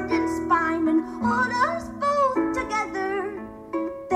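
Solo harp plucked, accompanying a woman's singing voice that bends through a phrase about a second in.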